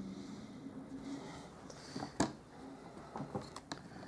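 Faint handling noise of stamping tools on a craft table, with one sharp click about two seconds in and a few lighter clicks near the end.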